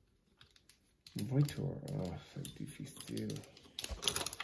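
Light plastic clicks and snaps of a small Transformers action figure being handled and moved through its transformation, with a person's voice over it from about a second in.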